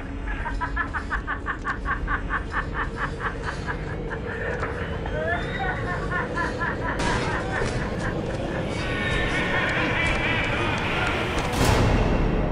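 Film soundtrack mix: a rapid pulsing beep for the first few seconds, then voices shouting over a rising, noisy commotion, with a loud hit just before the end.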